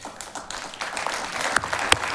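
Audience applauding, building up about half a second in, with one sharp, close clap near the end.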